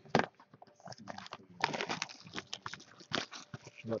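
Clear plastic shrink wrap being torn off a sealed trading-card box, crinkling and crackling irregularly, busier from about a second and a half in.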